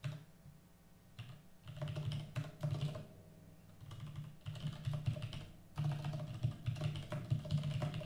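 Typing on a computer keyboard: runs of quick keystrokes with short pauses between them, starting about a second and a half in.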